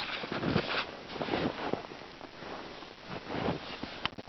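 Rustling and a few soft knocks from hands working among spruce brush beside a set trap, with some wind on the microphone.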